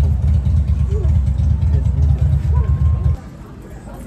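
Loud, steady low rumble with faint voices over it, cutting off abruptly about three seconds in.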